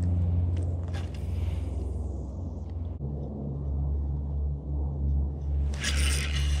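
A low, steady rumble on a body-worn camera's microphone. Just before the end comes a sudden loud rustle of jacket and gear as the angler sweeps the spinning rod back in a hard hookset.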